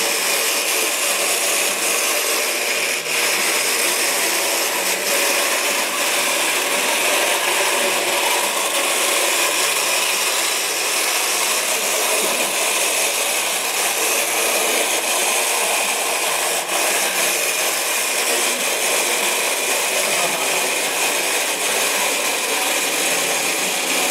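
Small electric drive motors of homemade robots whining steadily as the robots shove against each other, with a few light knocks.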